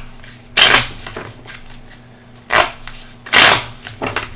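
A deck of tarot cards being shuffled by hand: three short, sharp bursts of card noise, about half a second in, near two and a half seconds, and near three and a half seconds.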